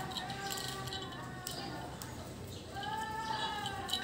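Alexandrine parakeet vocalizing with soft, wavering chatter and one longer drawn-out call near the end, with a few light clicks of beak on a plastic ball toy.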